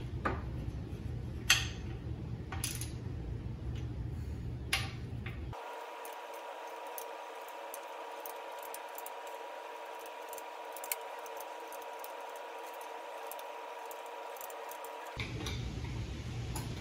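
Socket wrench and torque wrench working the cylinder head bolts of a Briggs & Stratton L-head engine, torquing them down over a new head gasket: scattered light metallic clicks and clinks of the ratchet and socket on the bolts. A faint steady hum sits under the first five seconds, and a faint steady high tone under the rest.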